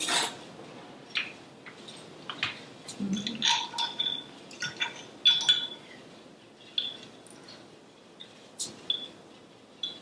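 A metal fork and cutlery clinking against a ceramic bowl: a string of separate sharp clicks and short ringing clinks, thickest around the middle.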